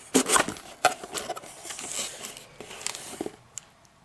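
A white cardboard box being opened by hand: a few sharp knocks and scrapes of the cardboard at the start, then a longer rustle as the lid comes up, and one sharp tap near the end.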